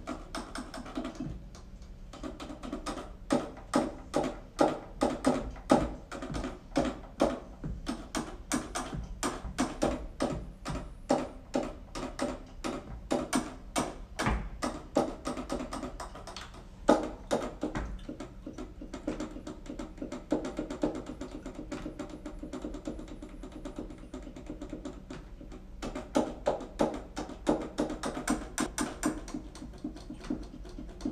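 Plastic keys and pads of a small MIDI keyboard controller being played, heard as a rapid, irregular clatter of taps with no instrument sound of its own. The strokes thin out about two-thirds of the way through and speed up again near the end.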